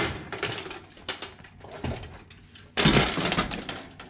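Aluminium PAR can stage lights clanking and rattling as they are handled on a metal pipe bar. There are two louder bursts of metal clatter, one at the very start and one about three seconds in, with smaller knocks between.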